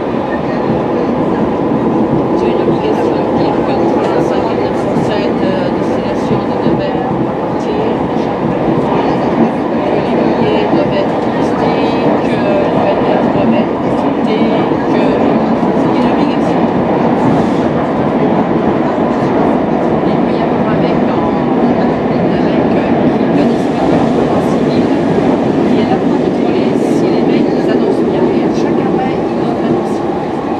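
Steady, loud running noise heard inside an RER A MI84 electric train: wheels and running gear rumbling on the track, with small clicks and rattles from the car throughout.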